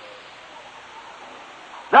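A pause in an old sermon recording: steady tape hiss and room noise, with the preacher's voice starting again at the very end.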